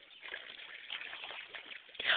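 Faint sloshing and trickling of water stirred by a swimming Australian shepherd paddling.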